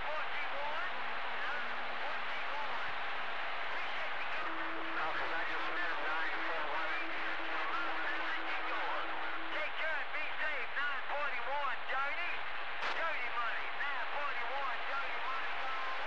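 CB radio receiver hiss with faint, garbled voices of distant skip stations overlapping in the noise: the far station has faded into the static. A steady low tone sits under the hiss for about five seconds from around four seconds in, and there is a single click near the thirteen-second mark.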